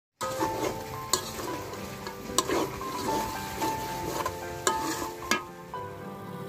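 Mutton curry sizzling and frying in a pan as a spatula stirs it, with four sharp clinks of the spatula against the pan. Soft background music with held notes plays underneath.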